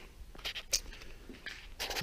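A few faint clicks and knocks over quiet room tone, the plainest about three-quarters of a second in.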